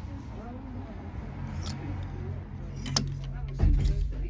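Faint background chatter in a shop, with sharp clicks of clothes hangers knocking on a rail, the clearest about three seconds in. A loud dull thump comes near the end.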